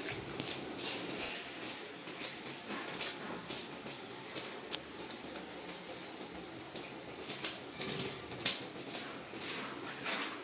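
A knife scraping scales off a hilsa fish in short, irregular scratchy strokes, with a quick run of louder scrapes about three quarters of the way through.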